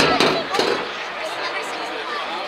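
Chatter of spectators along the sideline, with a sudden loud burst of noise at the very start lasting about half a second.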